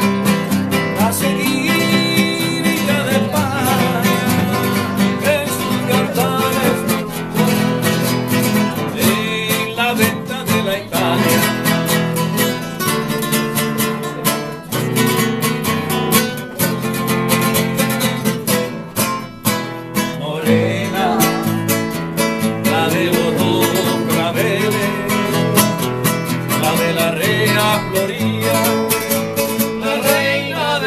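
Nylon-string Spanish classical guitar played solo, strummed chords mixed with picked melodic runs, as an instrumental passage of a Spanish song.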